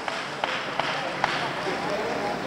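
Spectators' voices and cheering echoing in a large hall, with three short sharp knocks or claps in the first second and a half.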